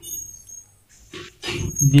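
Whiteboard marker squeaking on the board in short high-pitched strokes as it writes, then a man starts speaking near the end.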